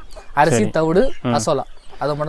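Free-range country chickens clucking, mixed with a man's speaking voice.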